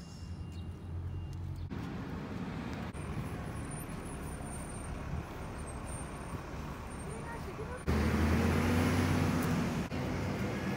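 Steady low rumble of a running vehicle engine or nearby road traffic under outdoor background noise. The sound shifts abruptly several times and is loudest from about eight seconds in.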